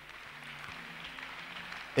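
A congregation clapping and applauding, heard as a faint, even wash of claps with no single clap standing out.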